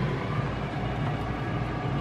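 Steady low hum with an even rushing noise from a running household fan or ventilation.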